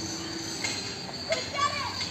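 Children's voices calling out while playing: a short call a little after half a second in and a longer, gliding call near the end, over steady outdoor background noise.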